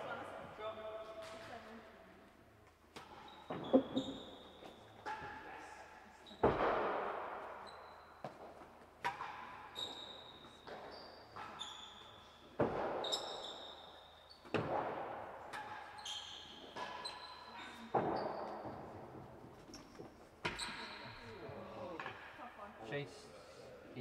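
Real tennis rally: the hard, cloth-covered ball struck by wooden rackets and smacking off the walls, penthouse roof and floor, a sharp impact every two to three seconds, each echoing through the hall. Short high squeaks come between the hits.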